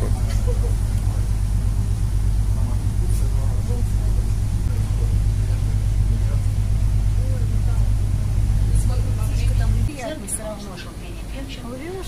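Wind buffeting a smartphone microphone on the deck of a moving river cruise ship: a steady low rumble that stops abruptly about ten seconds in, leaving faint voices.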